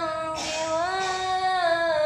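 A boy singing a sholawat (Islamic devotional song) unaccompanied, holding long notes with wavering ornaments. He takes a quick breath about half a second in.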